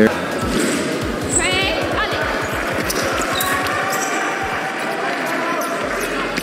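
Rapid footfalls thudding on a fencing piste as sabre fencers move in guard, with a brief squeak about a second and a half in. Voices carry in the background of a large hall.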